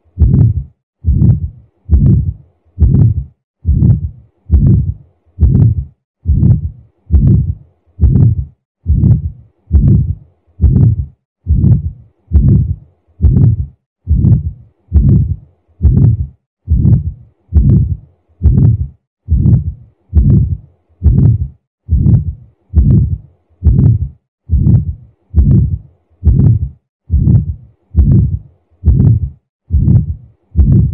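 Recorded heart murmur heard through a stethoscope: a steady, regular heartbeat a little over once a second, each beat a drawn-out sound of about half a second rather than a crisp lub-dub, the sign of turbulent blood flow through the heart.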